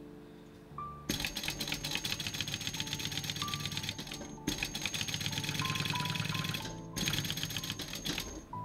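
Industrial flat-bed sewing machine (Mitsubishi LY2-3750) stitching leather at speed. It runs in three bursts of rapid, even stitching: starting about a second in, with brief stops about halfway and about seven seconds in. Soft background music plays under it.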